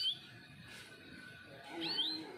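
Yellow domestic canary giving short rising chirps, one right at the start and another near the end, over a faint steady high tone.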